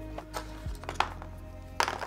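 A few separate plastic clicks from keycaps being pressed down on a mechanical keyboard, the loudest about a second in and near the end. Faint background music with a low hum runs underneath.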